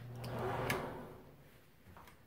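Bathroom wall switches clicked: a click, a brief low hum with a rush of noise, then a second click about three quarters of a second in that cuts the hum off.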